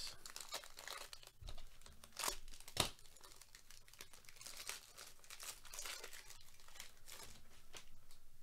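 A Bowman Draft jumbo pack's wrapper crinkling and tearing as it is ripped open by gloved hands, with a couple of sharper crackles about two to three seconds in, then lighter crinkling.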